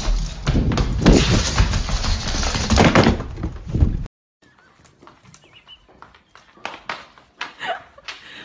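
Rapid thumping footfalls of cats running flat out across a hard floor and up stairs, loud and dense with a quick run of thuds. About four seconds in it cuts off abruptly, leaving a much quieter stretch of faint clicks and short soft sounds.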